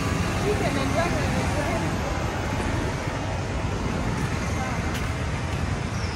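Steady city street traffic noise with a low rumble of vehicles, and indistinct voices in the first second or so.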